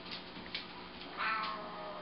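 Siamese cat giving a long, drawn-out warning yowl at the approaching puppy, starting about a second in and sliding steadily down in pitch. Before it, a couple of light ticks of paws on the floor.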